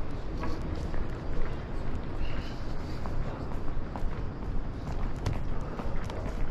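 Footsteps of a person walking on stone paving, irregular short steps about twice a second, over a steady low background noise of the street.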